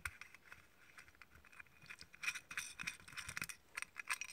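Faint scraping and small clicks of machined metal parts as an LED arm is unscrewed by hand from the light's hollow threaded studding, busier from about two seconds in.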